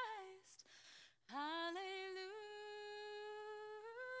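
A woman's solo voice singing unaccompanied: a phrase ends, there is a short pause, then she slides up into one long held note about a second in and lifts to the next note near the end.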